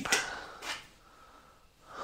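A man's short breathy exhale right after speaking, then a faint click and quiet room tone.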